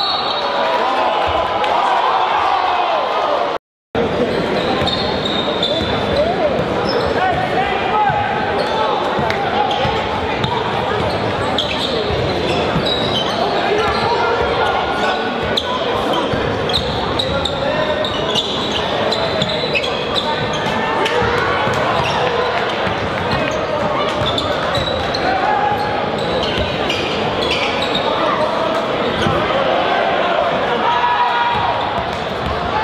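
Basketball game in a gym: a steady hubbub of crowd and player voices echoing in the hall, with a basketball bouncing on the hardwood court. The sound cuts out completely for a moment about four seconds in.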